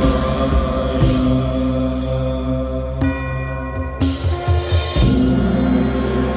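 Devotional music with chanted mantra: held, layered tones with a wavering voice-like line underneath, shifting every second or two.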